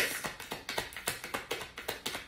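A tarot card deck being shuffled by hand: a quick, uneven run of soft card clicks and slaps, about six a second.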